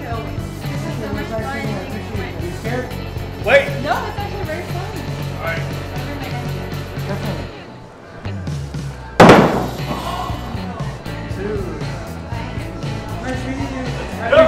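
Background music, with one sharp loud impact about nine seconds in: a thrown axe striking the wooden target board.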